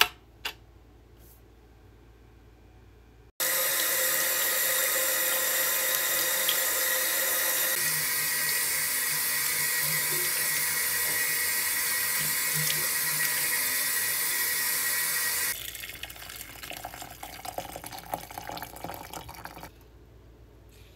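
Two light clicks, then a tap running steadily into a ceramic washbasin, which stops abruptly after about twelve seconds. Water is then poured from a kettle into a glass teapot's infuser, a lighter, uneven splashing that ends just before the close.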